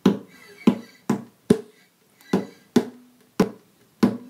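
Acoustic guitar played with muted, percussive strokes: short sharp hits about every half second, each dying away quickly with only a trace of pitch.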